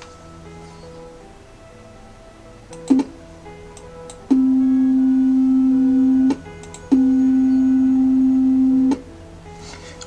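Computer-generated middle C tone (C4, about 261.6 Hz), a plain steady tone sounded twice for about two seconds each, starting and stopping with a click, after a brief blip about three seconds in. Faint background music runs underneath.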